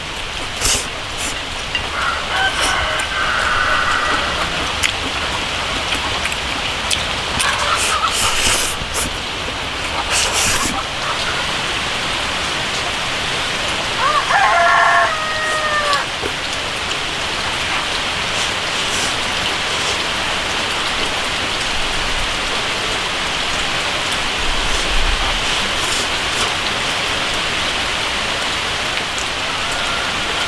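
Steady rain falling, with a rooster crowing once about halfway through. Short clicks of eating with chopsticks come and go in the first ten seconds.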